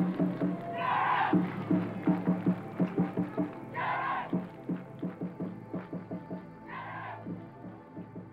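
Music with a steady percussive beat, fading out toward the end. A brighter held note comes in about three times, roughly three seconds apart.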